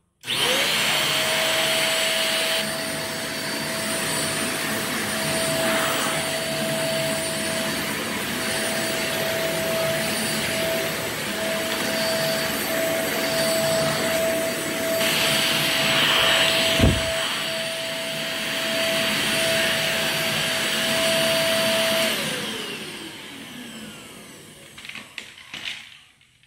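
Corded stick vacuum cleaner switched on, its motor spinning up to a steady whine over the rush of suction and running as it is pushed across the floor. There is a single knock about two-thirds through. Near the end it is switched off and the motor winds down with falling pitch.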